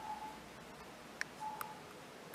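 Faint electronic beeps: short single tones repeating about every second and a half, with a couple of sharp clicks between them.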